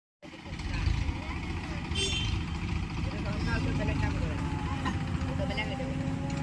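Diesel engines of a backhoe loader and a farm tractor running at work with a steady low, throbbing rumble. A steady higher whine joins about three and a half seconds in.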